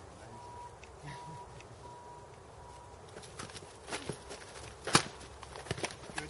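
Feet scuffing and stepping on a dirt-and-gravel driveway during padded practice-sword sparring, fairly quiet at first, then a quick run of sharp clicks and hits from about halfway, the loudest a sharp hit just before the five-second mark.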